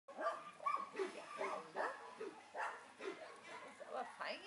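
A dog whining and yipping in short, pitched cries that rise and fall, two or three a second.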